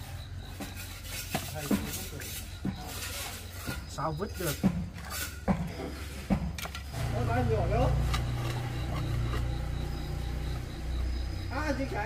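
Steel trowel scraping and tapping on wet cement mortar while floor tiles are laid, heard as a run of short sharp scrapes and clicks. A low rumble underneath grows louder from about seven seconds in.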